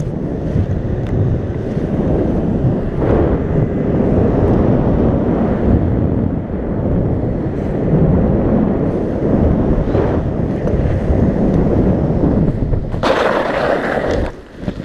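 Wind rushing over the microphone of a wingsuit pilot's helmet camera in flight: a loud, steady rush that swells and eases. About a second before the end, a brighter, louder flapping burst as the parachute is deployed.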